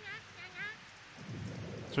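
Cartoon rain falling, with a low thunder rumble building about halfway through and a few faint, short, high chirps early on.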